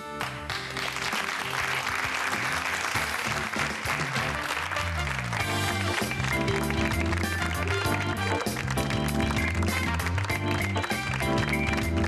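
Studio audience applauding over closing theme music with a steady beat; the applause dies away after about five seconds and the music carries on.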